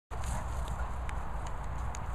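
Low, steady rumble of wind and handling noise on a phone microphone outdoors, with a few faint clicks scattered through it.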